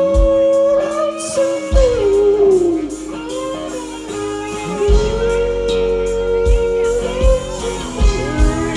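A rock band playing live: electric guitar and bass with singing, long held notes, one sliding down about two seconds in, and a few kick-drum beats.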